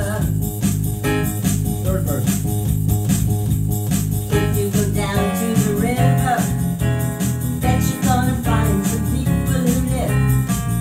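Digital piano playing a tune over a steady rhythmic accompaniment, with a woman's voice singing over it into a microphone in the second half.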